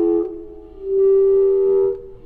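Slow chamber music for B-flat clarinet and piano. The clarinet's held note fades out just after the start, and after a short gap it sustains a new, slightly higher note from about a second in.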